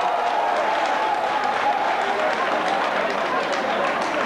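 Audience applauding, with crowd voices mixed in.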